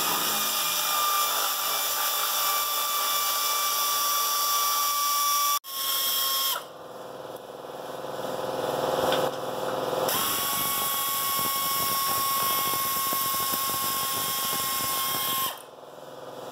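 Cordless drill with a socket extension spinning out the bolts of a Jeep's front bottom plate. It runs in long steady whines that stop suddenly about five and a half seconds in, starts again with a short burst and a slow build, then runs steadily again and stops shortly before the end.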